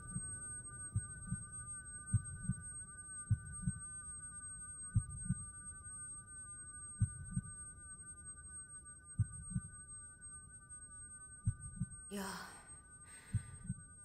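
Heartbeat sound effect in a film soundtrack: paired low lub-dub thumps that slow from about one beat a second to about one every two seconds. Under it runs a thin, steady high drone of two held tones.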